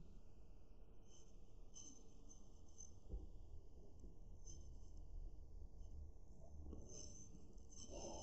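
Faint scratching of a felt-tip pen writing on paper.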